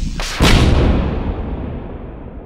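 A single heavy boom, sudden and loud about half a second in, with a long rumbling tail that dies away over the next two seconds.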